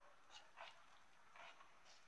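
Near silence, broken by four faint short sounds.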